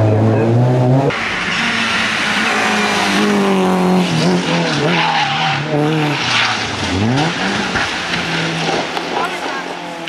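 Race car engine revving hard. After about a second, another race car's engine runs with its tyres skidding as it slides sideways and loses control before rolling over. The engine note rises sharply about seven seconds in.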